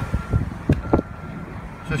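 Rumbling handling and wind noise on the microphone, with two light knocks a little past the middle. A faint high beep repeats about once a second.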